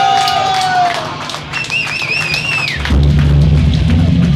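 A live punk hardcore band between songs: a held high tone, then a wavering higher tone, over the stage. About three seconds in, the band comes in at full volume with distorted guitar, bass and drums.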